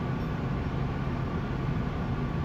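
Valmet-Strömberg MLNRV2 tram heard from inside its passenger saloon: a steady low rumble with a faint high tone above it.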